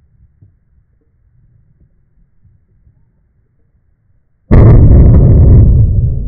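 A single shotgun shot about four and a half seconds in, loud enough to overload the recording for over a second, then slowly dying away in a long tail.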